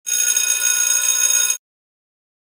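Electronic interval-timer signal: a loud, high ringing tone held steady for about a second and a half, then cut off abruptly, marking a workout interval.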